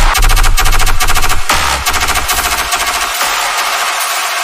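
Electronic dubstep-style remix: a rapid, stuttering run of repeated hits over a heavy bass line. The low end drops away about three seconds in.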